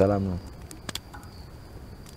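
A man's speech trails off in the first half-second. After that there is quiet background, with a faint steady high-pitched tone and a single click about a second in.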